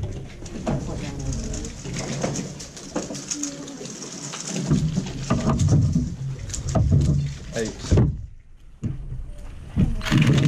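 Background chatter: several people talking indistinctly in a room. The sound briefly drops away about eight seconds in, then the talk returns.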